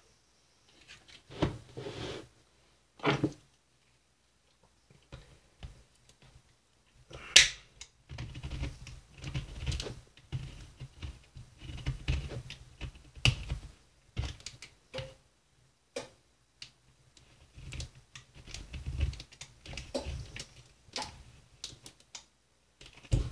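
Handheld manual can opener clicking and clacking irregularly as it is worked around the top of a Pillsbury refrigerated dough tube, struggling to cut it open. One sharp, loud click stands out about seven seconds in.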